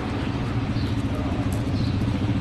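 A motor vehicle's engine running close by on the street, a steady low hum that grows a little louder near the end, over general street noise.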